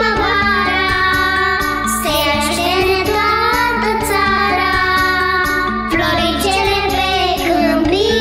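Children's choir singing a spring song over an instrumental backing with a steady beat, in sung phrases a few seconds long.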